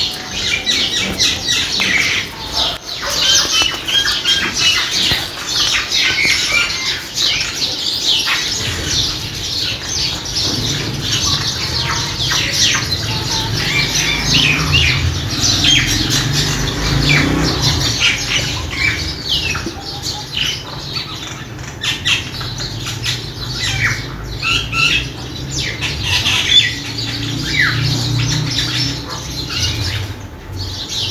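Recorded bird calls: many short, overlapping chirps and squawks laid over the pictures as a nature-sound track. A low rumble sits under them from about nine seconds in.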